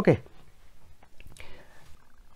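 A man's voice saying "okay" with a falling pitch, then quiet room tone with a faint click and a short breath about a second and a half in.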